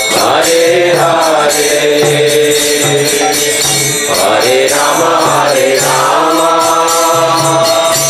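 Devotional mantra chanting (kirtan): voices singing a repeating melody over jingling hand percussion that keeps a steady beat.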